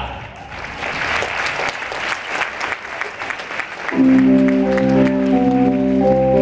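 Audience applauding, then about four seconds in a stage keyboard starts the song's introduction with sustained organ chords.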